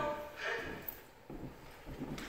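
A few soft footsteps on a hardwood floor as a person walks across a room.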